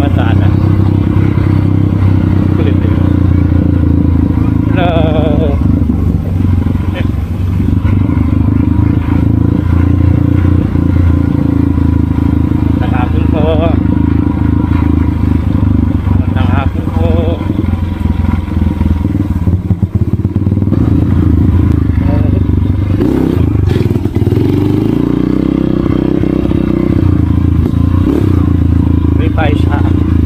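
Motorcycle engine running steadily under way at an even speed. Near the end the engine note drops and then climbs again.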